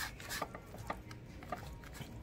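A fork digging into and stirring a loaded baked potato in a plastic takeout bowl: soft scraping with a few faint clicks of fork on bowl.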